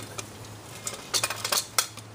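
Aluminum folding easel being adjusted by hand: light metallic clicks and rattles from its legs and locks, a few at first and then a quick cluster from about a second in.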